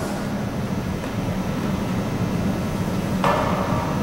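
A steady low hum, and about three seconds in a short rush of noise as the athlete kicks explosively up out of a GHD sit-up.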